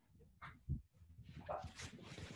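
Faint, muffled speech from a listener in the audience, too far from the microphone to come through clearly, with a low thump about two-thirds of a second in.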